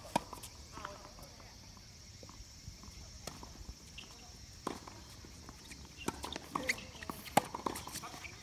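Tennis balls bouncing on the court and struck by rackets: scattered sharp knocks, coming closer together in the last couple of seconds, the loudest about seven seconds in. Faint voices in the background.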